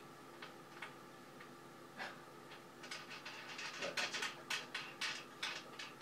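Small irregular metallic clicks and taps of a wing nut and washer being threaded and tightened by hand onto a bolt under a wooden table, sparse at first and coming quickly for a couple of seconds past the middle.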